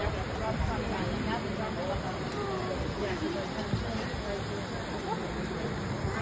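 Indistinct chatter of several people talking, with no clear words, over a steady background rush.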